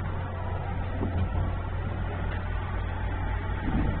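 A steady low hum under an even background hiss, with no speech.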